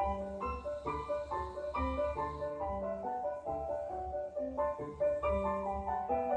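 Background music: a piano playing chords and a melody line of struck, decaying notes over a low bass.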